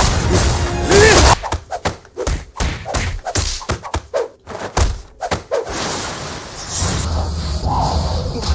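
Anime fight sound effects: a rapid run of sharp punch and impact hits, several a second, from about a second and a half in until nearly six seconds, over music. After that the hits give way to a steadier low rumble.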